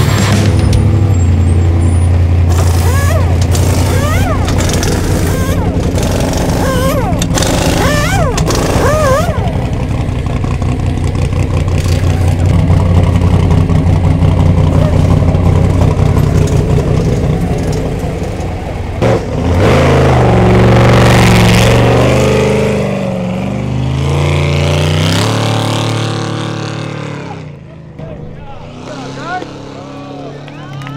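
Off-road race truck's engine running steadily during a pit stop. About two-thirds of the way through it changes abruptly and revs as the truck pulls away, fading near the end.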